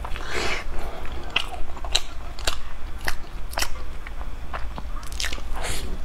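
Close-miked chewing of a soft filled bread roll, with sharp wet mouth clicks about twice a second and a longer tearing bite sound near the start.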